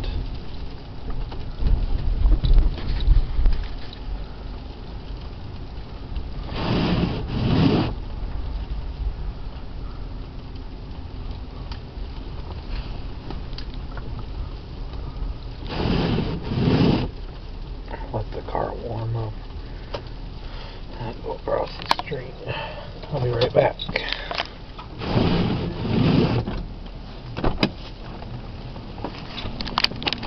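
Windshield wipers dragging across an iced-over windshield. They make a pair of scraping swipes about every nine seconds, three times in all, over the car's steady low hum.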